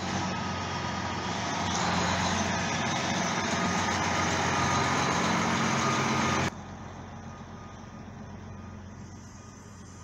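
Diesel engine of a semi tractor-trailer running loud and close as the truck manoeuvres. About two-thirds of the way through the sound drops off abruptly and the engine goes on much quieter, farther away.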